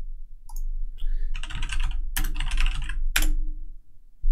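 Typing on a computer keyboard: a quick run of keystrokes, ending in one sharper key strike about three seconds in.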